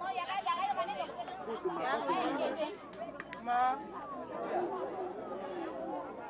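Several people chattering at once, their voices overlapping, with one voice standing out about three and a half seconds in.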